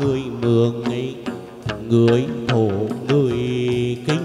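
Chầu văn ritual music: a singer holding long, wavering notes over instrumental accompaniment with sharp percussion strokes.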